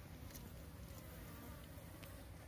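Faint insect buzzing, with a couple of soft ticks.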